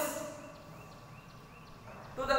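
Faint short chirps repeating about four times a second, like an animal calling.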